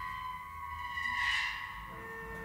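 Cello bowed softly on sustained high notes, the steady tones swelling briefly about halfway through.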